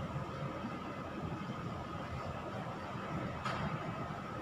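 A marker drawing a line on a whiteboard, faint under a steady hiss, with a small tap about three and a half seconds in.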